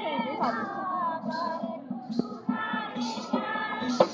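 Live folk dance music: drums keeping a steady, repeating beat under a high melody line that wavers and bends in pitch.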